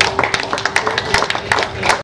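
A small audience applauding, with separate handclaps heard one by one rather than a dense roar.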